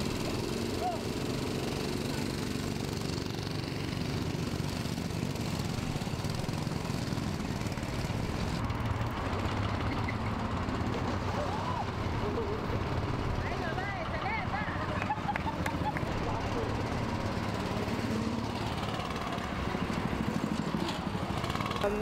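Go-kart engines running on a track, a steady mechanical drone throughout, with people's voices faintly in the background.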